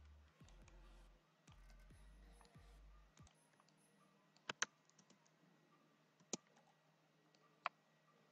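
Near silence broken by a few sharp computer mouse clicks: a quick double click about halfway through, then single clicks later on. A faint low hum runs under the first three seconds.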